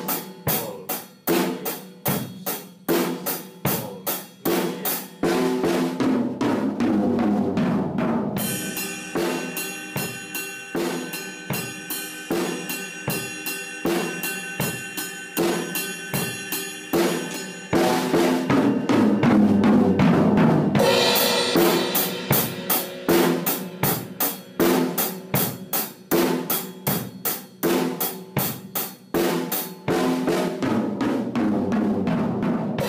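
PDP drum kit playing a basic rock beat on hi-hat, snare and bass drum, broken by one-bar fills of two strokes on the snare and each tom in turn, with the bass drum under each stroke. From about eight seconds in the beat moves to the ride cymbal, whose ringing wash fills the sound, until a second fill and a crash lead back to the hi-hat beat near the twentieth second.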